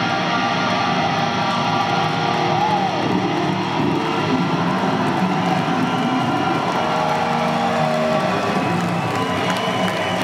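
Live rock band playing through a loud PA, led by electric guitar, with one guitar note bending up and back down about three seconds in. The audience cheers underneath.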